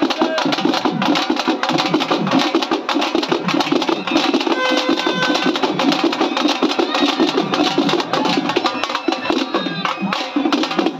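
Street drum band of dappu frame drums and other drums beaten fast and loud with sticks, in a dense, driving rhythm that runs on without a break.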